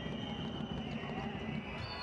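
Handball arena ambience during play: a steady background of crowd noise with faint irregular knocks from the court.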